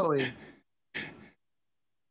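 A man's voice trailing off at the end of a phrase, falling in pitch, then a short sigh-like breath about a second in.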